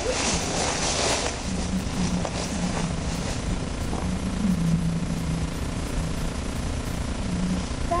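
Frozen lake ice cracking and shifting, heard as a run of low moaning tones that come and go.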